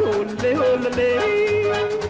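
Old Tamil film song: a voice holding and bending an ornamented melody line over a steady percussion beat.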